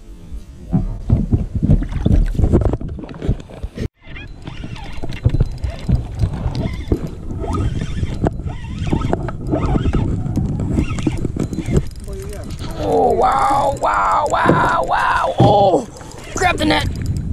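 Water splashing as a small largemouth bass is let go by hand at the surface. After a cut comes a steady low rumble with many small clicks while a spinning reel is cranked. A few rising-and-falling voice-like calls follow near the end.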